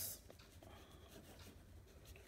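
Faint scratching of a pen writing by hand on a sheet of paper.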